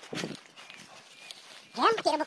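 A few footsteps rustling through dry leaves and undergrowth, then near the end a loud call rising sharply in pitch.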